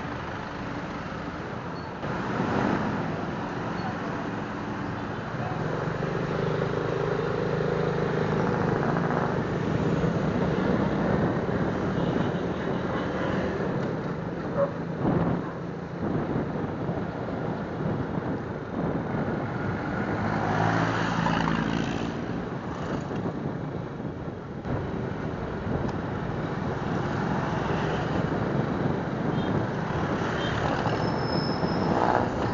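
A Suzuki Smash underbone motorcycle's small single-cylinder four-stroke engine running on the move, with wind and road noise on the microphone and surrounding street traffic. The engine note swells twice, about a third of the way in and again about two-thirds through.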